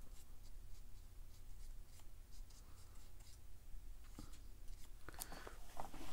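Faint scratchy strokes of a watercolor brush laying paint onto cold-press paper, with scattered light ticks that are a little louder near the end.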